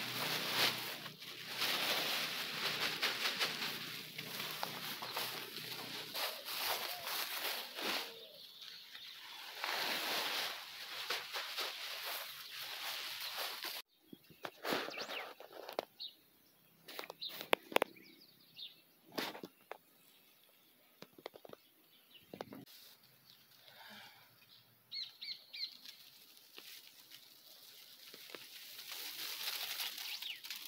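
Black plastic bag rustling and crackling as compost is shaken out of it onto a garden bed, a steady rustle for about the first fourteen seconds. It then cuts off suddenly to a much quieter stretch with scattered light clicks and a few short bird chirps.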